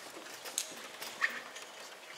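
Quiet concert hall in the hush before the orchestra starts: faint room noise with a few small knocks and a short squeak about a second and a quarter in.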